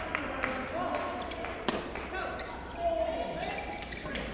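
Badminton rally: rackets striking the shuttlecock in a few sharp cracks, the loudest a little under two seconds in, with players' footwork on the court.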